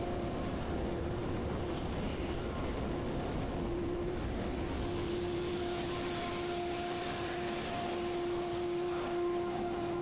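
Steady drone of industrial plant machinery, with a constant humming tone that fades in and out over the even rumble.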